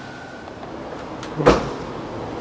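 A single sharp thump or bang, like a door knocking shut, about one and a half seconds in, with a short ring after it. A faint steady high whine fades out early.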